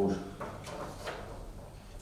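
Faint rustling and shuffling as a man moves and turns in a room, during a pause in his speech.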